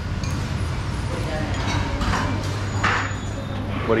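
Restaurant room noise: a steady low hum with faint voices in the background and a few short noises from the table.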